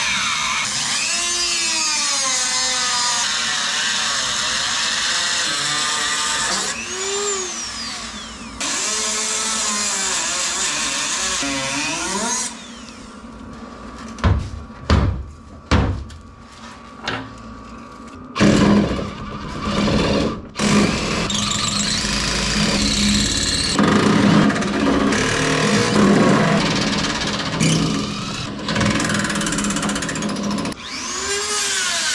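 Power drill working at the door hinge bolts, its motor speeding up and slowing down as the trigger is worked for about twelve seconds. A stretch of several sharp metal knocks follows, then another long run of power-tool noise near the end.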